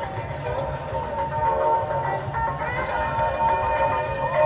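Music with held, wavering vocal-like notes playing over a public-address loudspeaker system in the background, over a steady low rumble.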